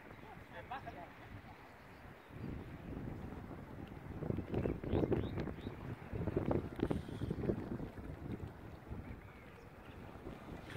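Wind buffeting the microphone in irregular gusts, loudest in the middle stretch, with faint voices in the background.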